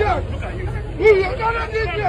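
Several people's voices talking over one another at close range, with a steady low rumble underneath.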